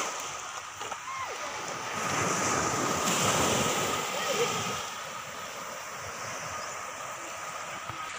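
Small waves washing in and out on a pebbly beach, swelling louder a couple of seconds in, with wind on the microphone.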